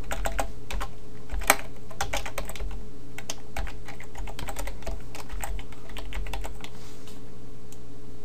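Typing on a computer keyboard: irregular runs of keystroke clicks, one sharper keystroke about a second and a half in, thinning out near the end. A steady low hum runs underneath.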